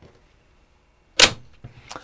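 Plastic snap-fit clip of the Riden RD6018 module snapping into its enclosure: one sharp, loud click about a second in, then a fainter click near the end.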